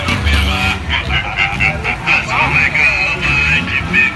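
Busy street din: many people's voices and shouts mixed with music and the engines of passing vehicles, all running together without a break.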